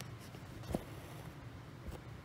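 Cross-stitch needle and cotton floss scratching through aida fabric as fingers handle the cloth. There is a sharp tick about a third of the way in and a softer one near the end, over a low steady hum.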